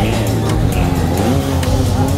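Loud music with a Kawasaki 636 sport bike's inline-four engine revving up and down underneath it as the bike is ridden through a stunt.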